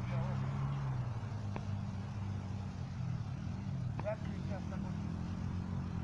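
An off-road vehicle's engine idling steadily, with faint voices in the background and two small clicks.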